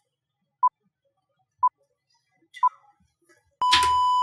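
Electronic countdown timer beeping: short high beeps once a second, then one longer beep of the same pitch, starting with a click, as the count reaches zero near the end.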